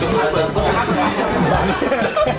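Several young people's voices chattering over each other, with background music with a steady beat underneath.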